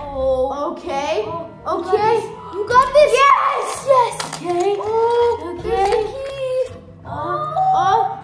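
Children's excited, wordless exclamations and straining cries as they reach for something, over background music.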